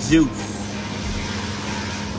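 Engine coolant pouring and dripping steadily from the engine where the water pump has just been unbolted.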